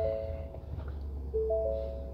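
Ford 7.3-litre V8 gas engine idling just after starting, a low steady rumble. Over it a dashboard warning chime of three soft tones sounds twice, at the start and again about a second and a half in, with the hood ajar.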